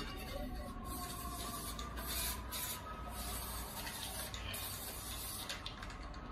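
Hissing, crackling noise effect from a logo intro, coming in short surges over a low hum.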